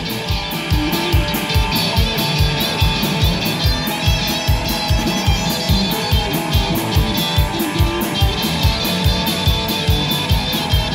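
Live blues-rock band playing an instrumental passage with two electric guitars, one a blue hollow-body with a Bigsby vibrato, over a drum kit keeping a steady fast beat. There is no bass guitar and no singing.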